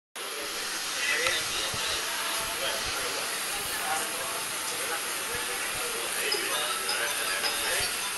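Faint, distant voices over a steady hiss of background noise from a hockey pitch.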